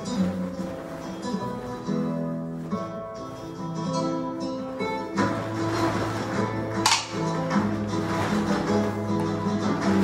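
Flamenco guitar music playing, the playing growing fuller about five seconds in. A single sharp crack stands out about seven seconds in.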